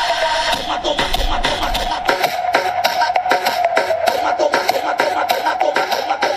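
Pop music with a steady beat played through a small portable Bluetooth speaker and picked up by a microphone about a meter away. About two seconds in the deep bass drops out and a run of crisp beats, about three to four a second, begins.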